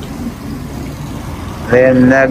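Steady low background rumble. Near the end a man's voice comes in loudly, holding drawn-out notes.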